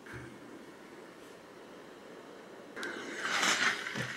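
Quiet room tone, then a soft rustle of hands handling and smoothing folded cotton fabric that starts near the end and grows a little louder.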